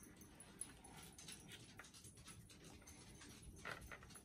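Near silence: faint room tone with a few soft taps from paint cups being handled and stirred.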